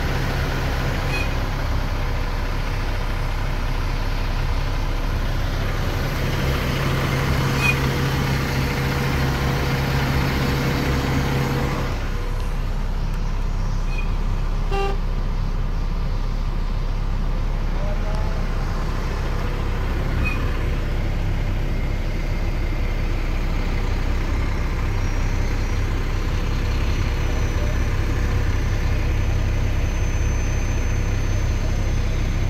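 Diesel engine of a Mack truck idling, heard from inside the cab as a steady hum. A steady higher tone over it stops about twelve seconds in.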